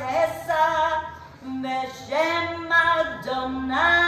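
A woman singing a Havdalah melody unaccompanied, in phrases of long held notes with short breaks between them.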